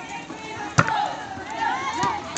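Voices calling out across the court, with one sharp smack a little under a second in, the loudest moment.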